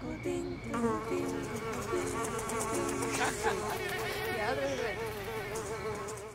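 Buzzing of a fly, a steady drone whose pitch wavers up and down, taking over about a second in.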